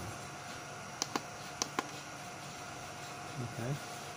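Four short, sharp clicks in two quick pairs about a second in, from buttons being pressed on the faceting machine's control keypad to change a setting, over a steady faint hum.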